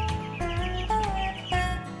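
Background music with held notes and a steady bass, with young chicks peeping in short high chirps over it.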